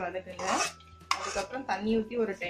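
Metal spoon scraping and clinking against an aluminium kadai while a thick onion-tomato mixture is stirred, in irregular strokes with a brief lull just before the middle.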